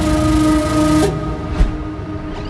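Electronic music: a held synth chord sounds, then about a second in the high end cuts away and the track drops into a quieter break.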